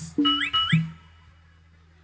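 A brief snatch of live band music with two short rising tones, stopping about a second in and leaving only a faint background.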